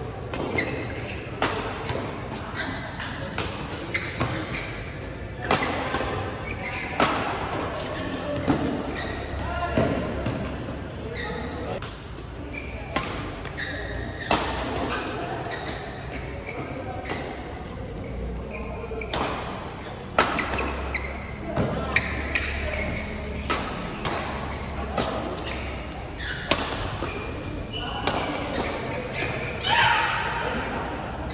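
A badminton doubles rally: sharp racket strikes on the shuttlecock come irregularly, about one a second, with thuds and players' voices in a large hall.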